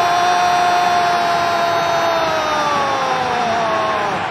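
A football commentator's long held goal shout, one sustained high note that sags in pitch near the end, over the steady roar of a celebrating stadium crowd.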